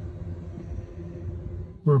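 Low, steady background rumble with a faint constant hum, without distinct events. A man's voice begins right at the end.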